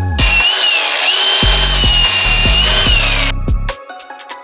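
A handheld power tool runs with a high whine for about three seconds, its pitch falling as it stops. Background music with a bass line plays underneath.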